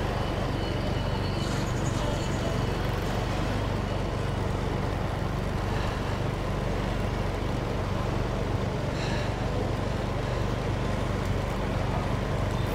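Steady street traffic noise from motorbikes and bicycles passing on a narrow road, over a constant low hum.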